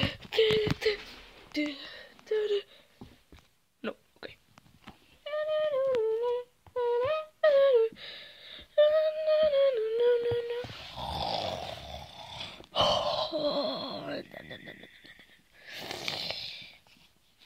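A high voice humming a short wavering tune of a few held and gliding notes for several seconds mid-way, with scattered knocks and clicks before it. Near the end it turns into rough, strained, noisy vocal sounds.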